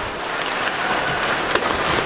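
Steady hockey-arena crowd noise during live play, with a few sharp clicks of sticks and puck on the ice.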